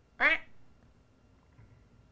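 A woman imitating a duck's quack with her voice: one short call about a quarter of a second in, followed by quiet room tone.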